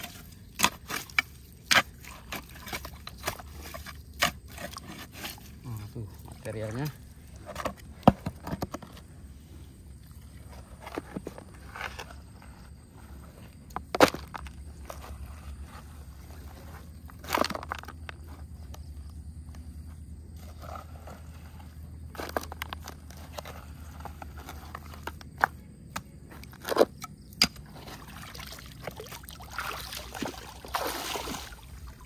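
Digging in stony dirt with a small hand tool: irregular sharp scrapes and knocks as the tool and pebbles strike, with dirt being scooped into a plastic gold pan.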